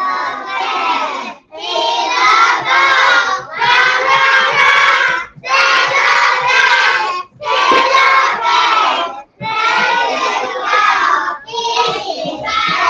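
A group of young children chanting a rhyme loudly in unison, in regular phrases of about two seconds with short breaks between them.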